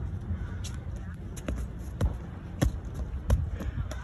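A child's bare feet and hands slapping on pavement as he runs up and tumbles: a handful of sharp slaps roughly half a second apart over a low steady rumble.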